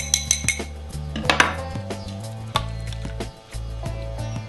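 A metal fork clinking against a small glass bowl of lightly beaten eggs: a quick run of clinks at the start, then a few single clicks. Soft background music with a low bass runs underneath.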